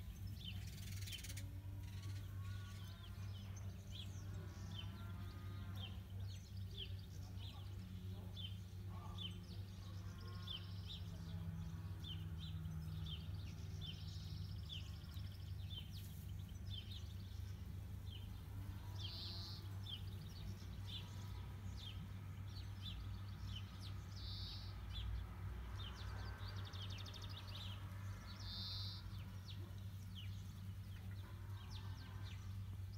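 Faint outdoor ambience: a bird chirping over and over, about twice a second, above a steady low hum.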